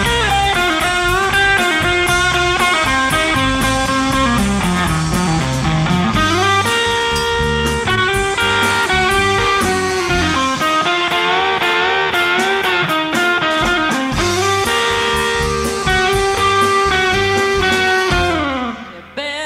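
Live band playing an instrumental passage: an electric guitar lead with bent, gliding notes over bass and a steady drum beat with cymbal ticks.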